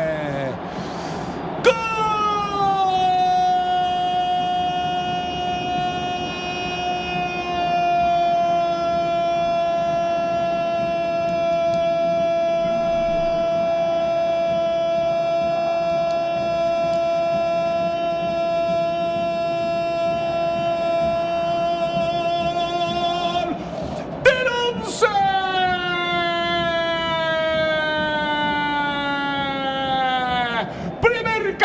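A football commentator's long, drawn-out goal call, a shouted 'goooool' that starts about two seconds in, slides down and is held on one note for some twenty seconds. Near the end comes a second shorter cry that falls in pitch.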